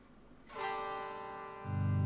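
Fret King Super Hybrid electric guitar played through its piezo bridge pickup with the volume barely opened, so the sound is faint. A string note rings out about half a second in, then a louder, lower note starts near the end.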